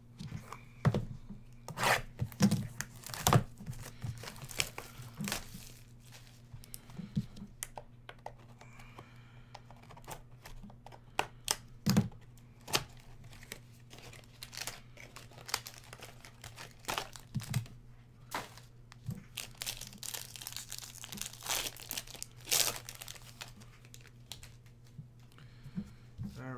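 A cardboard trading-card hobby box and its packaging being torn open by hand: a run of tearing, crinkling and clicking handling noises, over a steady low hum.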